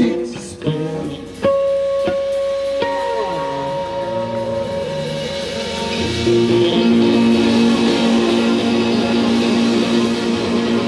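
Live rock band playing an instrumental passage on electric guitar, bowed electric cello, drums and bass guitar. A couple of long held notes stand out in the first few seconds, and the whole band fills in from about six seconds in.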